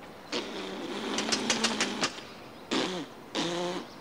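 A man blowing raspberries with his lips: one long spluttering raspberry of about a second and a half, then two short ones near the end, as a taunt.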